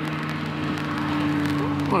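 A steady low mechanical hum with even outdoor background noise; a man's voice starts at the very end.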